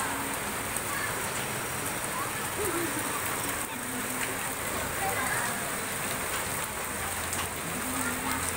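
Steady rain falling on a wet concrete street, an even hiss throughout, with faint voices now and then.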